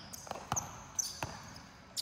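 A basketball being dribbled: a few sharp bounces on a plastic tile court floor, with the hall's echo behind them.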